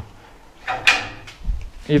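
Metal pen gate scraping and knocking as a man leans on it and pushes off: a short scrape just under a second in, then a dull knock.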